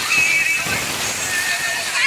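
Children shrieking and shouting at a water-slide splash pool, high wavering cries over the steady rush and splash of water.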